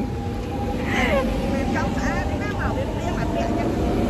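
Electric commuter train standing at the platform with a steady hum and a low rumble. Faint voices are heard nearby.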